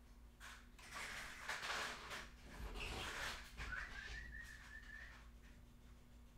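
Faint cat fight: rough hissing noises, then a wavering, high-pitched yowl lasting about a second and a half, a bit past the middle.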